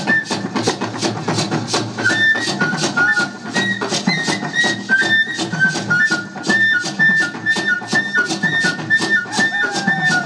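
Live traditional drum ensemble playing a steady beat of hand-drum strokes, with a flute playing a high melody of short held notes over it.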